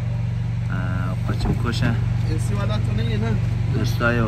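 A man talking over the steady low drone of a car engine, heard from inside the cabin.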